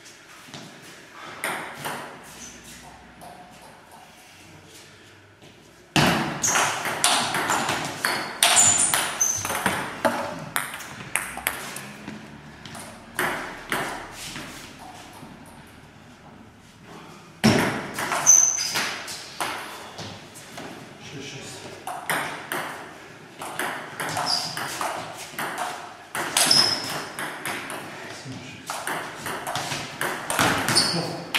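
Table tennis balls clicking sharply off bats and the table in quick rallies, quieter for the first six seconds and busier after.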